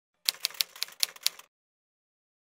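Typewriter key strikes used as a typing sound effect: six sharp clicks at an uneven pace over about a second and a quarter.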